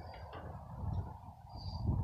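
A lull with a faint steady low hum inside the truck cab. About one and a half seconds in there is one faint short high chirp.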